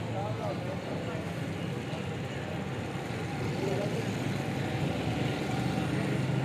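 Steady low hum and rumble of outdoor background noise, with faint distant voices.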